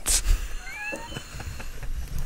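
Men laughing, with a breathy burst at the start and a few short, high-pitched squeaky laugh notes about a second in.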